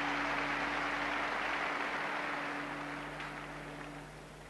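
Stadium crowd noise, a general hubbub that slowly dies away, with a steady low hum underneath.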